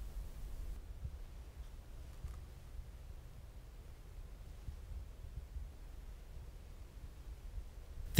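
Faint, unsteady low rumble of light wind on the microphone in an otherwise quiet open field.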